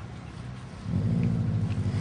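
A low, steady rumble with a hum, getting louder about a second in.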